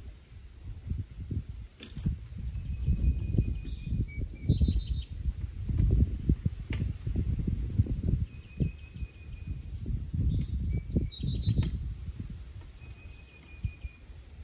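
Wind buffeting the microphone in uneven gusts, with birds chirping and giving short trills in the trees several times.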